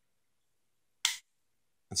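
A single short, sharp plastic click about a second in: the trigger lock button on a Milwaukee M12 Hackzall reciprocating saw being pushed in, locking the trigger.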